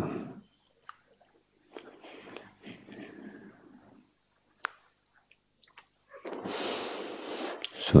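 Close-miked human breathing in a pause between spoken words: faint breaths and a couple of small mouth clicks, then a longer audible in-breath in the last two seconds, just before speech starts again.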